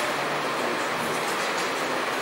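Steady rushing background noise with a faint low hum, unchanging throughout.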